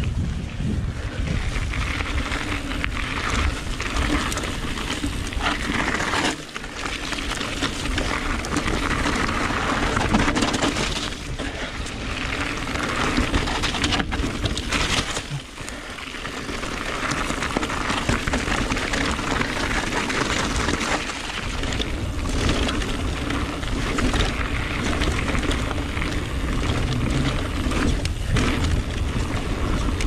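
Full-suspension electric mountain bike riding fast down a dirt and gravel singletrack: steady noise of the knobbly tyres rolling over loose ground, mixed with wind on the microphone. The noise drops briefly twice, about six and fifteen seconds in.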